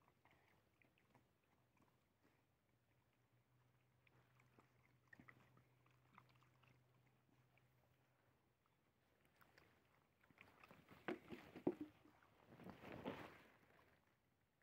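Mostly near silence with faint scattered ticks from dogs feeding at a tray of tortillas. About ten seconds in there is a run of sharper clicks, then a short scuffling noise.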